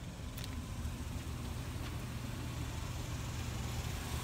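Steady low hum of a 2005 Chevrolet Avalanche pickup running at idle, heard from inside the cab.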